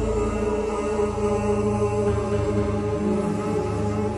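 Electronic music from a DJ mix: sustained, layered droning tones, with the deep bass fading out about halfway through.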